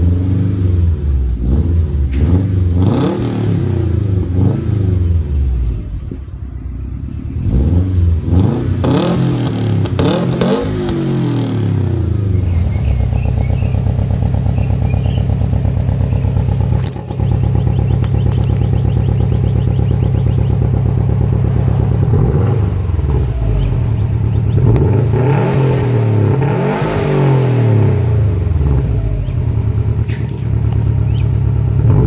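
Subaru WRX STI turbocharged 2.5-litre flat-four exhausts being revved while stationary. First comes a 2008 STi with an Invidia downpipe and Magnaflow cat-back, blipped up and down several times. About 12 seconds in it gives way to a 2015 WRX STI with an Invidia Q300 cat-back, which idles steadily and is then revved a few times near the end.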